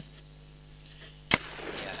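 A single rifle shot, sharp and brief, about a second and a third in, over a faint steady hum.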